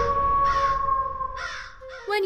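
Crow caws, repeating about a second apart, over a steady held tone in a horror channel's logo sting. The tone stops just before the end.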